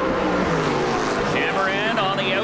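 Two NASCAR stock cars' V8 engines at full racing revs, their note falling in pitch over the first second. A commentator starts talking again near the end.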